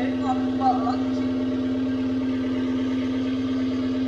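Mini excavator's diesel engine idling steadily, an even drone with no revving.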